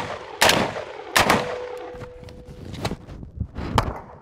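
Gunshots: two shots from an AR-15 rifle about three-quarters of a second apart, then, after a transition from rifle to handgun, two pistol shots near the end. Each shot has a fading echo, and a faint steady ring follows the second shot.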